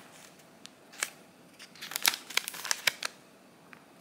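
Crinkling and clicking of a thin sheet of pimple patches being handled in the fingers, with a cluster of sharp crackles between two and three seconds in.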